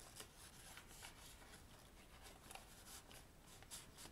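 Faint paper rustling with a few light ticks as the pages and tucked-in tags of a handmade paper journal are handled.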